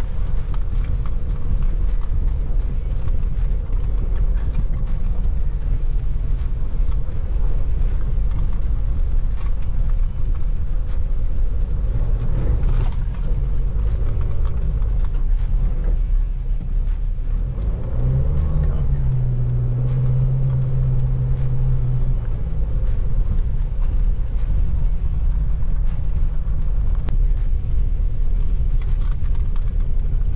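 In-cab sound of a Nissan Navara NP300 ute driving slowly along a rutted dirt track: a steady low rumble of engine and tyres, with frequent small clicks and rattles as it rides over the bumps. Music plays underneath.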